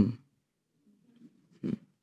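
A quiet pause with one short, low vocal "hmm" about a second and a half in, the kind of murmured response that met earlier statements in the talk.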